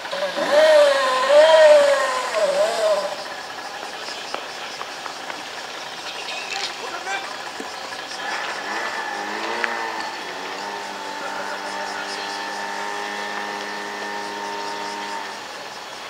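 Loud shouted drill commands in the first few seconds. Then, about nine seconds in, a portable fire pump's small engine rises in pitch and holds a steady, even note at working speed for several seconds.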